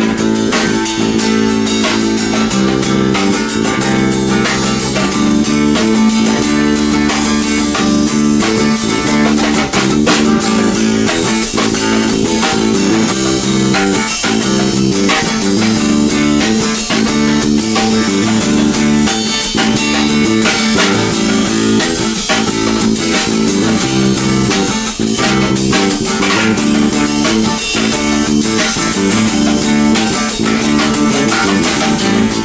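Acoustic guitar and electric bass guitar playing together live, the guitar strummed in a steady rhythm over a moving bass line: the instrumental opening of a song, with no singing yet.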